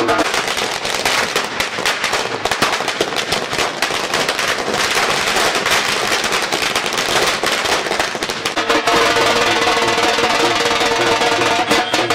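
A long string of firecrackers crackling rapidly over dhol drumming. The crackling dies away about eight and a half seconds in, leaving the dhol beat.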